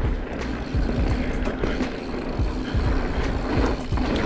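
Mountain bike riding on a dirt trail: wind buffets the camera microphone in a gusty rumble over the tyre and trail noise, with background music.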